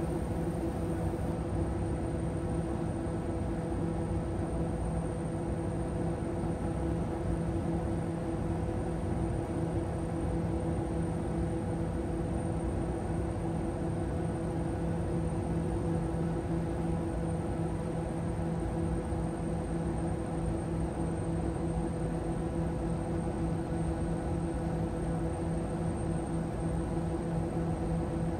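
Steady cockpit drone of the Piaggio P180 Avanti's twin Pratt & Whitney PT6A pusher turboprops on final approach, propellers at full forward rpm: an even hum with a constant low tone over a steady hiss.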